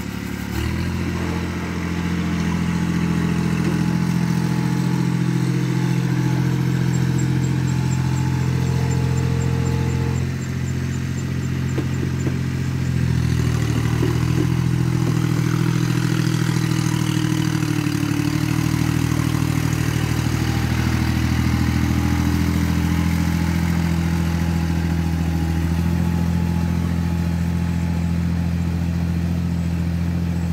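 Iseki TS2810 compact tractor's diesel engine running steadily under load as it works a flooded rice paddy on cage wheels. Its note shifts in pitch a few times.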